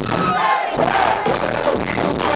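Club crowd and performers shouting along over a loud live dance track, the bass cutting out for a moment about half a second in.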